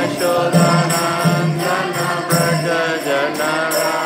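Devotional kirtan: a man sings a wavering, drawn-out melody line into a microphone over a mridanga drum and ringing karatals (small hand cymbals).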